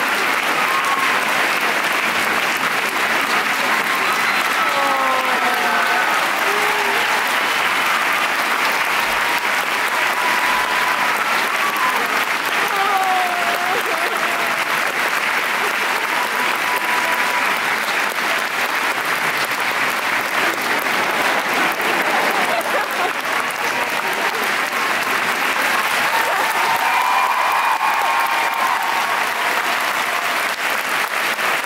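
Large audience applauding steadily, with a few scattered voices calling out over the clapping.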